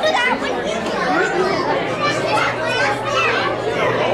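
Crowd of visitors chattering, many overlapping voices including children's, with no single voice standing out, over a steady low hum.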